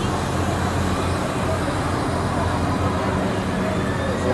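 Carnival midway ambience: a steady low machine drone under the chatter of a crowd.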